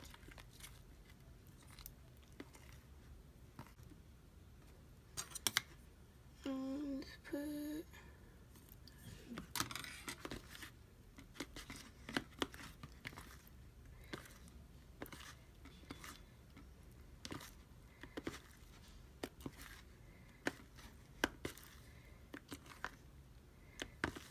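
Slime being stirred in a bowl: irregular clicks, taps and short scrapes of the utensil against the bowl, with two short hummed notes about seven seconds in.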